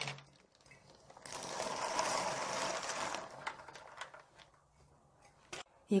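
A pot of cockles at a hard boil, bubbling and rattling for about two seconds before fading out, with a faint low hum underneath and a single click near the end.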